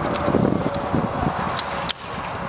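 Wind buffeting the microphone, with an instant camera clicking as it takes a picture and pushes out the print; a few sharp clicks come near the end.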